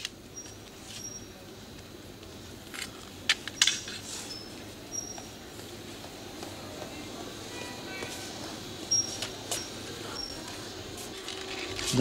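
A white cane and footsteps on the stone stairs of a metro station: scattered sharp clicks and taps over a steady, low station hum, with a few short high ringing tones.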